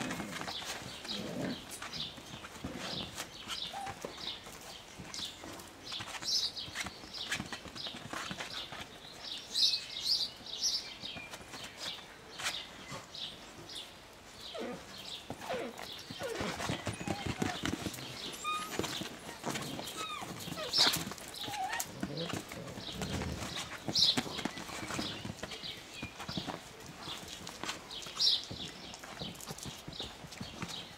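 A litter of puppies play-fighting: scuffling and scrabbling paws with many small taps and knocks, and short high squeaks now and then.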